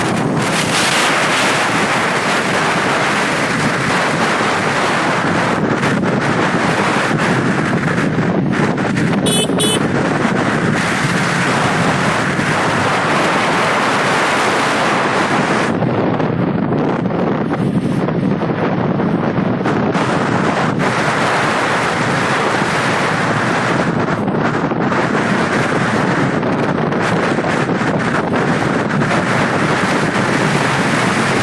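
Wind buffeting the microphone of a moving two-wheeler: a loud, steady rush with the road and vehicle noise beneath it. A brief high sound cuts through about nine seconds in.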